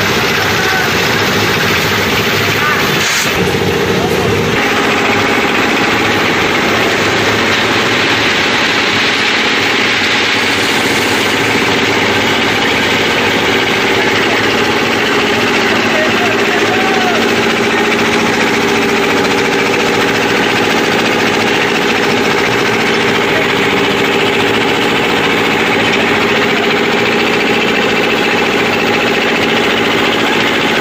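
A backhoe's diesel engine running steadily under load while it digs, with crowd voices mixed in.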